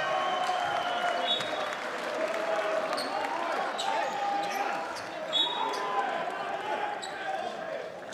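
Basketball game sound in a sports hall: the ball bouncing on the hardwood court, short high squeaks, and crowd voices throughout. Two sharper knocks stand out about five and a half and six seconds in.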